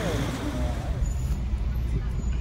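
Street noise with a few passing voices. About a second in it cuts to the inside of a car driving in city traffic: a steady low rumble of engine and road noise through the cabin.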